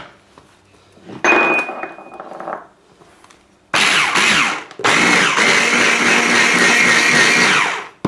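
Electric stick blender with a mini chopper attachment whirring in three pulses, a short one about a second in, another near the middle, then a longer run of about three seconds, as it blitzes coriander dressing to pulse in the Greek yoghurt.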